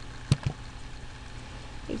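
A sharp click about a third of a second in, followed by a fainter second click, over a faint steady low hum: a computer mouse clicked to advance a presentation slide.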